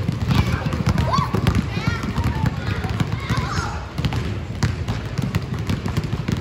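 Many basketballs being dribbled at once on a hardwood gym floor: a dense, irregular patter of overlapping bounces, with children's voices calling over it.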